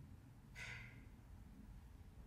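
Near silence with low room hum, broken about half a second in by one short, faint breathy exhale that fades within half a second.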